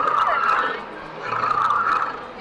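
Animatronic Triceratops giving a rough, growling roar through its speaker in two bursts, the second starting just over a second in.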